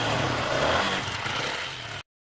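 Yamaha motorcycle engine running while the bike stands in neutral, a steady low engine note that eases off slightly and cuts off abruptly at the end.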